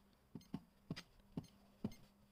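Buttons pressed one after another on a Secure Freedom 001 prepayment electricity meter keypad, five faint short clicks about half a second apart, entering a top-up code.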